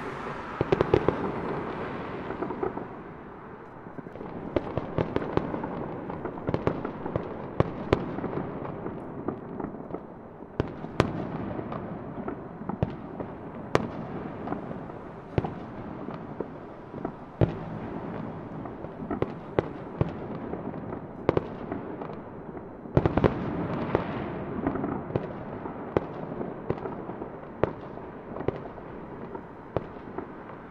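Fireworks display: many sharp pops and bangs at irregular intervals over a continuous rumble of bursts, with louder flurries right at the start and about 23 seconds in.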